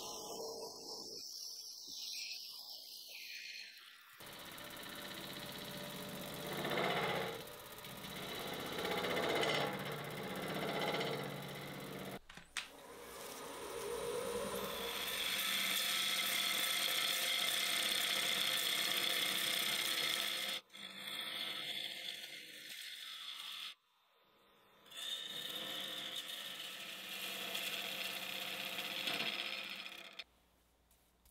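Turning gouge cutting a spinning cherry burl blank on a wood lathe: a steady hiss of shavings coming off over the lathe's hum. The sound breaks off and changes abruptly several times.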